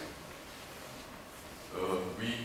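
A lull in a man's speech, filled with the low steady room tone of a lecture hall. His voice starts again near the end.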